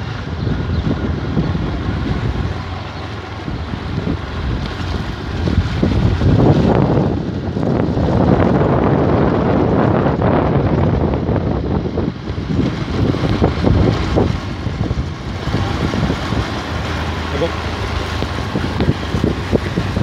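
Motorcycle engine running as the bike rides along, with wind buffeting the microphone. The noise grows louder about six seconds in and eases after about twelve seconds.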